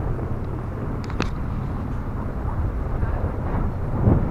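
Wind buffeting the camera's microphone on an exposed lookout tower: a steady, uneven low rumble, with a couple of faint clicks about a second in.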